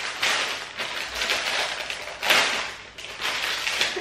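Thin plastic packaging bag crinkling and rustling in irregular bursts as it is handled and opened to take out a bikini, loudest a little past two seconds in.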